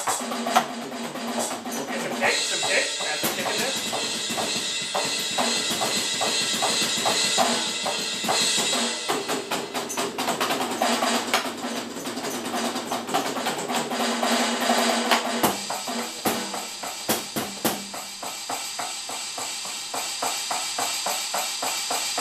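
Electronic drum kit played through speakers: a fast, continuous run of kick, snare and cymbal hits.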